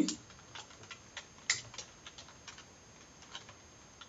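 Computer keyboard being typed on: about a dozen faint, irregularly spaced keystrokes, with one louder click about a second and a half in.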